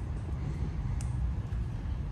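Steady low background rumble with one short click about halfway through.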